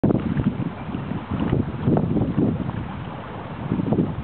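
Wind buffeting the microphone in uneven gusts, over the wash of choppy water.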